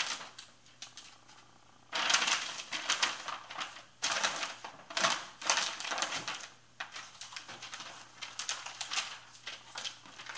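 A USPS shipping mailer being handled and folded, rustling and crinkling in loud bursts from about two seconds in, then lighter scattered crackles.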